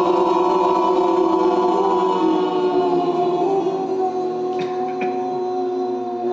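A man's voice holding one long, unbroken chanted tone through the open mouth: a meditative vibration-kriya sound, or nada. The pitch is steady and drifts slightly lower, and the tone eases a little in loudness in the second half.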